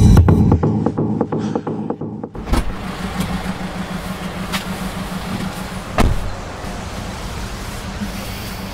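The song's last echoing hits fade out over the first two seconds. Then a car's idling engine gives a steady low hum, heard from inside the cabin, with a thump about six seconds in.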